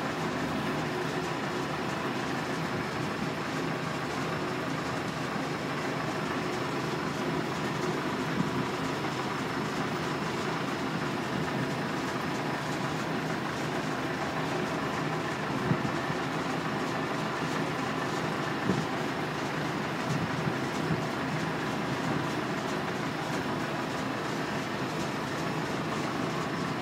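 Steady hum of lifting machinery running as the hull is lowered onto the keel, with a few short knocks about eight, sixteen and nineteen seconds in.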